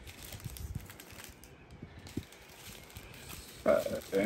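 Faint rustling and light taps of hands handling a clear plastic bag and a strip of sealed plastic packets of diamond-painting beads.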